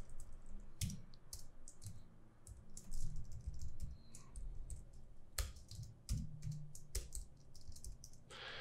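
Computer keyboard being typed on, with irregular, scattered keystrokes and short pauses between bursts.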